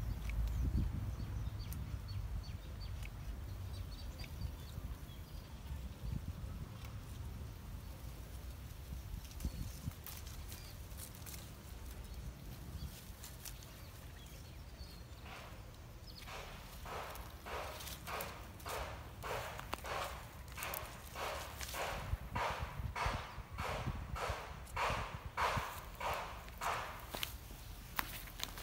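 Footsteps on dry leaf litter and soil, a steady walking pace of about two steps a second, starting about halfway through. Before that only a low rumble and faint scattered rustles.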